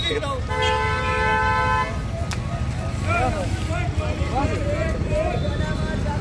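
A vehicle horn gives one steady toot of about a second and a half, starting about half a second in, over the low rumble of street traffic.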